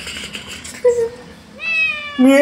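Domestic cat meowing: a short mew about a second in, then a longer meow that falls in pitch near the end.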